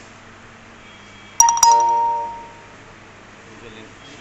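A bell-like chime: two quick strikes about a fifth of a second apart, ringing and fading over about a second.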